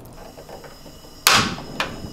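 Portable butane gas stove being lit. A loud, sharp click as the piezo igniter knob is turned and the burner catches about a second in, followed half a second later by a second, shorter click.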